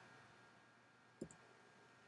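Near silence: faint room tone with a single short, faint click a little over a second in.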